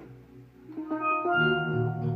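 Steel pan struck with sticks playing a slow melody over sustained keyboard chords. The music eases almost to a hush about half a second in, then pan notes pick up again and the keyboard's low chords swell back in just after the middle.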